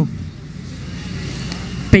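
Steady low background rumble of ambient noise in a pause between spoken phrases, with a woman's voice starting again right at the end.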